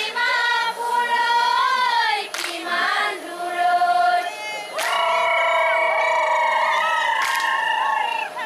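A group of voices singing a folk dance song without instruments, the melody gliding up and down and then held on one long note from about five seconds in. A sharp hit sounds about every two and a half seconds.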